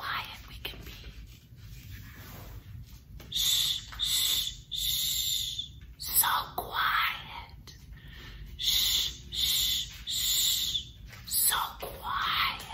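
A woman whispering: a string of about eight short, hushed, hissing bursts of breath.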